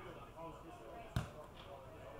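A single dull thud of an Australian rules football being kicked, about a second in, over faint distant voices of players.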